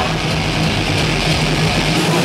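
Heavy metal band playing live: distorted electric guitars and bass holding a low, steady droning note, without vocals and with little cymbal.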